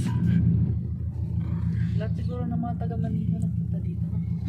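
Steady low rumble of a car heard from inside the cabin: engine and road noise droning evenly.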